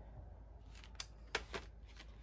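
Quiet handling of a cardboard box of colored pencils as it is set down on a pile of notebooks and pouches, with a few light taps about a second in.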